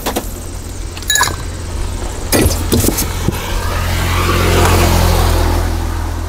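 A car passing on the road, building up and fading away in the second half, over a steady low rumble. About a second in comes a ringing clink of a steel cup or glass, and a few more knocks of utensils follow.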